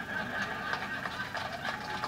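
Faint murmur of a seated crowd: scattered voices and small irregular sounds with no clear words, in a pause between loud speech.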